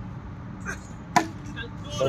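Cricket bat striking the ball: one sharp crack about a second in, with a fainter tap about half a second before it.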